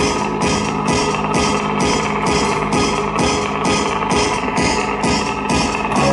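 Live electronic music played from a pad controller and laptop with an electric guitar, over a steady programmed beat of about two strokes a second.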